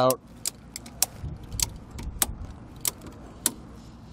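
Ratchet mechanism of an Erickson Winder tie-down strap clicking as its handle is cranked to tighten the strap: a series of sharp clicks, roughly one every half second.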